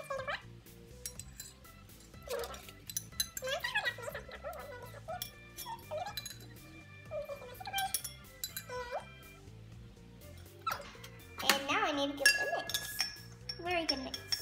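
A metal spoon clinking against a drinking glass as dry yeast is spooned in and stirred, over background music. Short voice-like sounds come and go, loudest about three-quarters of the way through.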